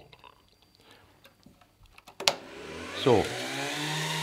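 A switch clicks about two seconds in and the FuG 16's umformer, a rotary motor generator that makes the high voltage for the valves, starts up: a whine that rises in pitch as it spins up, then settles into a steady hum.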